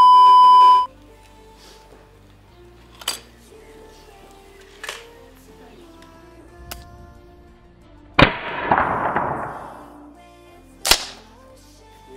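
A steady, loud test-tone beep lasting about a second, then background music with air-rifle shots: two lighter cracks around three and five seconds in, a loud crack about eight seconds in trailed by a rushing noise that dies away over nearly two seconds, and another loud crack near eleven seconds.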